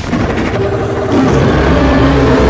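A giant ape monster's deep, loud roar in a film sound mix, with a heavy low rumble, swelling louder about a second in.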